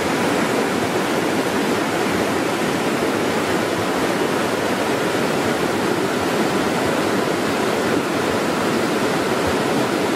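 Steady rushing of flowing river water, an even noise that holds at one level throughout.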